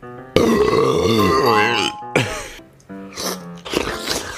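A man's loud, drawn-out vocal cry with a wobbling pitch, lasting about a second and a half, over background music.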